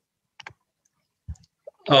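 A pause in a man's speech over a video call: silence broken by a few short, faint clicks, with his speech starting again near the end.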